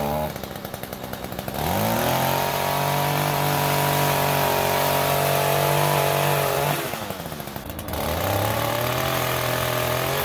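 Gas-powered pole saw's small two-stroke engine revving up to full throttle twice, about five seconds and then two seconds long, dropping back to a rough idle in between, while trimming tree branches.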